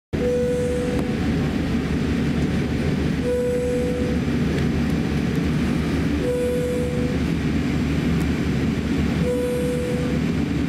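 Steady low cabin rumble aboard a Boeing 787-8 on the ground at pushback and taxi. A short steady tone sounds about every three seconds over it.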